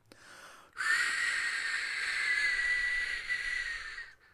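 A person making a long, steady hiss through the teeth, a snake-like 'ssss' with a faint whistle in it. It starts just under a second in and lasts about three seconds.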